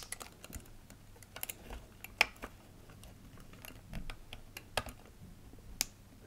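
Quiet, irregular small plastic clicks and taps as wiring connectors are pushed back onto a tumble dryer's circuit board and its plastic surround is handled.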